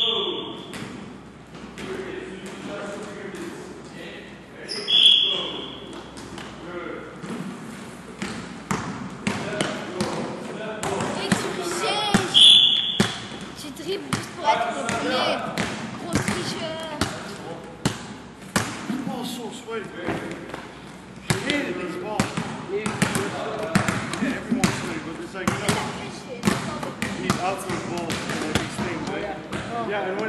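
Basketballs bouncing over and over on a gym floor, with voices in the background of a large hall. Three short high-pitched tones cut through: one at the start, one about five seconds in and one about twelve seconds in.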